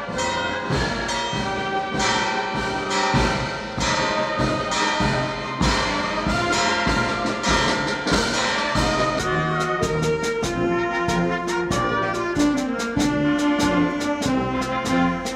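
Amateur wind band playing, brass and woodwinds together with percussion; from about two-thirds of the way in, a steady drum beat comes to the fore.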